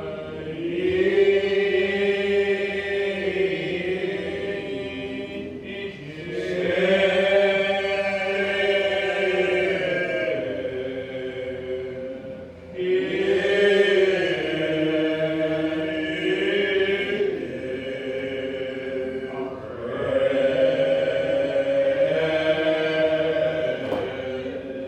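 Slow, unaccompanied hymn singing in long drawn-out phrases, about four of them, each six or seven seconds long, with the held notes bending slowly in pitch.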